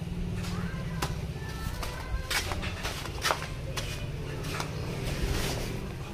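A few sharp clicks and knocks of handling over a steady low background rumble. The car's own engine is switched off.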